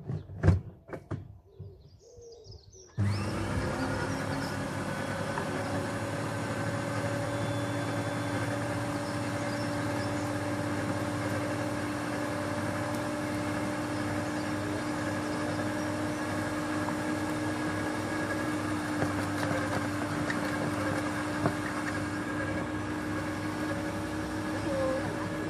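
A few knocks as the garden shredder is handled, then about three seconds in its motor switches on and runs steadily with a constant hum.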